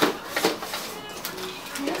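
Two sharp clicks and a light rustle of plastic wrap as a cellophane-wrapped tub is handled and turned over.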